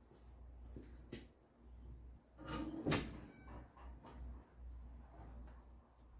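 Faint clicks, creaks and knocks from an engine hoist and its lifting chain as a Ford 5.0 V8 hanging from it is worked down into a truck's engine bay, over a low steady hum. The loudest noise comes about halfway through.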